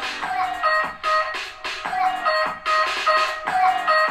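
Instrumental music with sharply struck notes and a beat, played loud through the Onida Fire TV Edition's built-in 16-watt speakers and picked up in the room.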